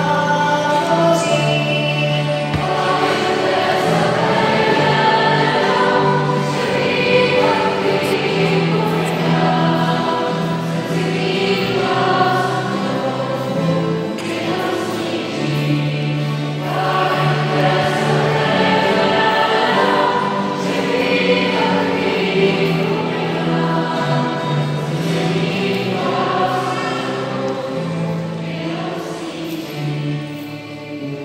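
Choir singing sacred music, a slow piece with long held notes and a sustained low bass line.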